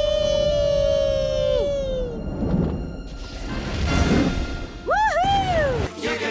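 Cartoon soundtrack: a long, high held 'aaah'-like note that sags and fades about two seconds in, then two low rumbling swells, then a swooping pitched cry that rises and falls away near the end.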